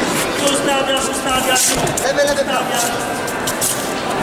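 Indistinct voices of spectators and coaches, not clear enough to transcribe, over background music in a large reverberant hall. A few short, sharp hissing sounds cut through, the loudest about a second and a half in.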